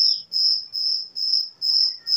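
A cricket chirping steadily, a high, even chirp repeating about twice a second.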